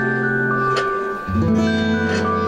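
Acoustic guitar and electronic keyboard playing an instrumental passage: long held keyboard chords under guitar strums, with the chord changing a little over a second in.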